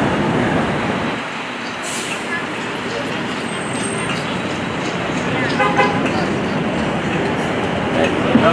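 A 1954 Canadian Car-Brill T48A electric trolley bus passing close by on a city street. There is no engine note, only a steady noise of tyres, body and traffic. A short pitched sound comes about five and a half seconds in.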